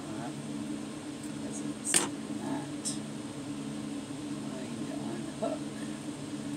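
A single sharp snip of scissors cutting through iron-on hemming tape about two seconds in, over a steady low mechanical hum.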